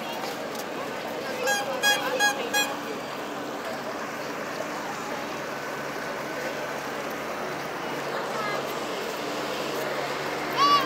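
Small wooden riverboat's diesel engine running with a low steady hum as the boat pulls away from the quay, over a steady outdoor din of background voices.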